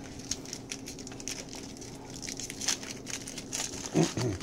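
Panini Prizm football cards handled by hand, with light crinkling and scattered small ticks as the cards and pack wrappers are shuffled and sorted, over a faint steady hum.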